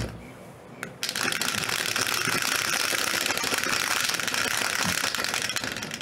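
Dice rattling inside a clear plastic dice dome: a dense, steady stream of clicks that starts abruptly about a second in and stops just before the end.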